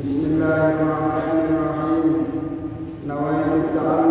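A man's solo chanted recitation into a microphone, in long, held melodic notes, with a short breath break about three seconds in.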